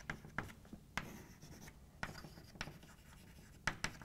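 Chalk writing on a blackboard: faint scratching strokes punctuated by sharp taps of the chalk against the board, two taps close together near the end.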